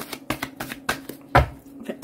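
A tarot deck shuffled and handled by hand: a run of quick, irregular card slaps and clicks, the loudest about one and a half seconds in.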